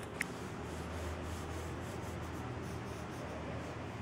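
Pencil drawing on sketchpad paper: a run of short scratchy strokes, with one sharp click a fraction of a second in, over a low steady hum.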